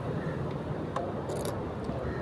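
Street background noise: a steady low rumble of traffic, with a brief click about a second in and a short high hiss just after.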